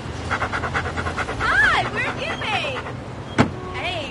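A quick run of breathy pulses, then several short vocal calls that rise and fall in pitch. About three and a half seconds in comes a single sharp thud of a car door being shut.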